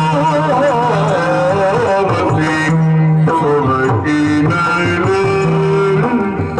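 Yakshagana bhagavata (lead singer) singing a heavily ornamented melodic line over a steady drone, accompanied by maddale drum strokes.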